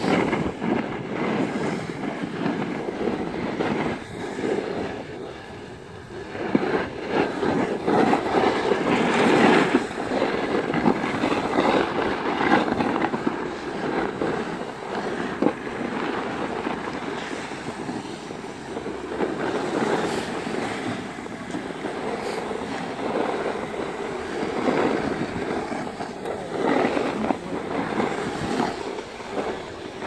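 Scraping, rushing noise of riding down a packed-snow ski slope, with wind buffeting the microphone; it swells and dips in level as the run goes on.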